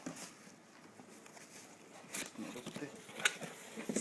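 Bubble wrap crinkling and cardboard rustling as a wrapped bottle is handled in a divided cardboard box, with sharp snaps about two and three seconds in.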